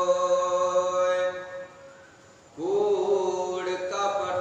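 A man chanting Gurbani in long, steady held tones. He breaks off for about a second partway through, then comes back in with a slight upward slide.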